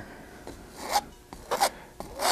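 Large paint brush stroked lightly over a canvas: a soft, scratchy rub of bristles, heard in two short strokes about a second in and again a little later.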